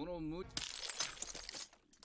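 A brief voice, then about a second of crashing, shattering noise full of sharp cracks, which stops shortly before the end.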